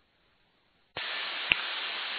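Airband radio receiver silent, then about a second in the squelch opens on a keyed transmission: a steady hiss of static from the open carrier, with one brief click partway through.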